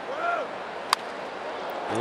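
Steady ballpark crowd noise, with one sharp crack of a bat hitting a pitched baseball just before a second in; a brief shout rises out of the crowd shortly before it.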